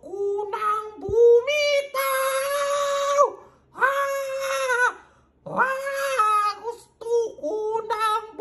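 A female singer belts long, high held notes with vibrato, about a second each, with short vocal runs and quick breaths between them. This is the climax of a pop ballad sung live, heard played back through a computer's speakers.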